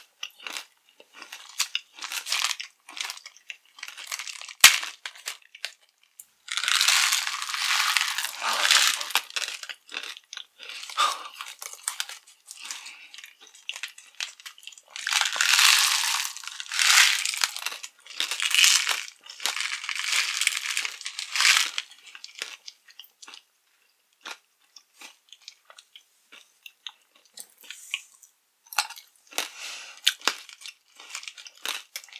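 Close-miked chewing and crunching of tiny hard candies, likely Nerds. Scattered short clicks are broken by two long stretches of dense crunching, one about a quarter of the way in and a longer one a little past halfway.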